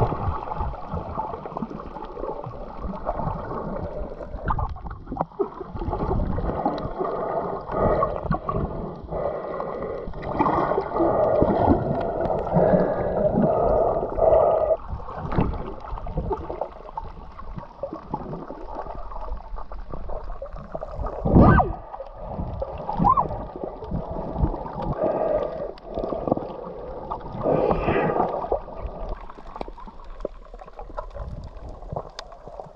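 Water gurgling and sloshing heard underwater through a submerged camera's housing, muffled, with the highs cut off, and rising and falling in waves. There is one louder surge a little past two-thirds of the way through.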